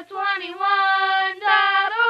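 Sung radio station jingle: a high voice sings three sustained notes, gliding up into each, with no instruments heard.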